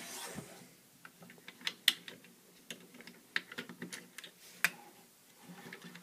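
Irregular small clicks and taps of hard Lego plastic as flick-fire discs are pushed back into a Lego vehicle's launcher. Two louder snaps come about two seconds in and again about four and a half seconds in.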